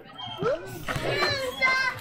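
Children's voices at play: two short high-pitched calls in the second half, over general playground chatter.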